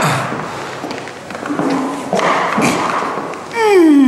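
A knock and scuffing as a person gets up from a low bench. Near the end comes a loud vocal cry that slides down in pitch, an effort sound on standing up.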